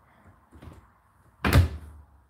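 Hotpoint NSWR843C washing machine's porthole door being pushed shut: a light knock a little after half a second in, then one loud thud about a second and a half in as the door closes.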